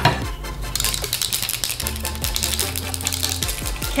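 Aerosol can of dry shampoo being shaken, a fast run of rattling clicks for a couple of seconds, over background music with a steady bass line.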